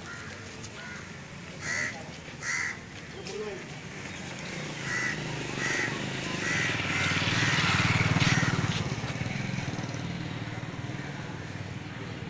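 A bird gives several short calls, the first two within about three seconds and more a few seconds later. A motor vehicle passes, growing louder toward the middle and then fading away.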